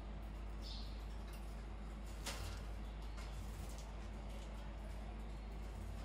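Quiet room with a steady low hum and a few faint clicks of a goldfinch husking seeds at the cage's seed dish.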